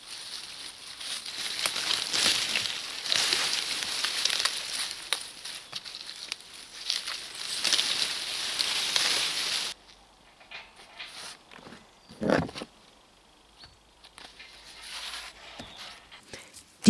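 Dry, wilting pumpkin vines and leaves rustling and crackling as pumpkins are pulled and cut free from the plants, in uneven waves. The noise stops abruptly after about ten seconds. What follows is much quieter, with a single short thump a couple of seconds later.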